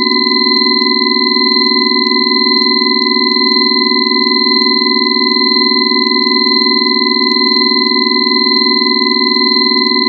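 Synthesized drone of pure sine tones held unchanged: high 'angel' tones near 4096 Hz over the five-element tones, one near 1 kHz, one near 2 kHz and a loud low cluster of about 264 to 380 Hz. A steady, piercing chord with no rhythm or melody.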